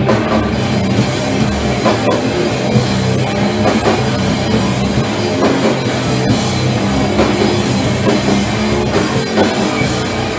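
A live band playing loud heavy music: distorted electric guitar over a drum kit, with drum hits coming steadily throughout.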